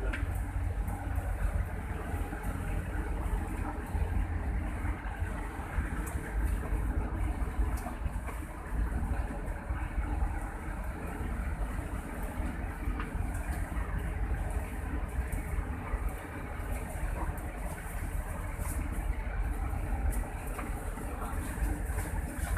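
Steady low rumble of a vehicle's engine with road noise, heard from inside the cab while it crawls through a flooded road.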